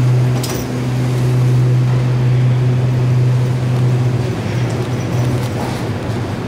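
Steady low machine hum in the underground airport tram station, easing slightly about four seconds in, with a short knock about half a second in.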